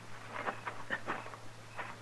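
A few faint, short clicks and rustles over a steady low hum from an old broadcast recording.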